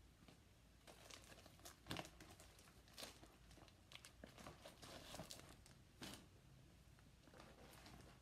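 Faint crinkling and rustling of a clear zip-top plastic bag being handled, in scattered crackles. The sharper rustles come about 2, 3 and 6 seconds in.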